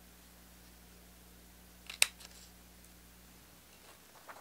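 A small paper dot punch clicking once as it punches through a sheet of paper: a single short, sharp snap about two seconds in, with a couple of faint clicks just around it.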